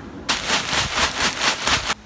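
Loose perlite being poured into a tub of potting mix: a dense, rapid rattling hiss of light granules lasting about a second and a half, starting and stopping abruptly.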